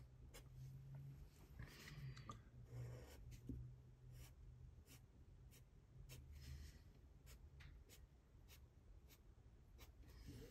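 Faint scratching of a black Sharpie marker drawing short strokes on paper, with a few soft ticks as the tip lifts and touches down.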